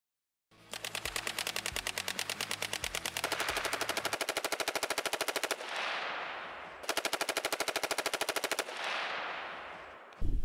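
Automatic gunfire in two long bursts of rapid, evenly spaced shots, about a dozen a second. The first burst runs for about five seconds and the second, shorter one comes about a second and a half after it. Each dies away in a fading echo.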